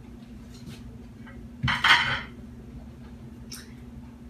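A plate and small glass bowl set down on a table, a brief clatter of dishes about halfway through in two quick knocks close together, over a faint steady hum.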